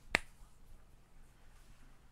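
A single sharp computer-mouse click just after the start, then quiet room tone with a faint low hum.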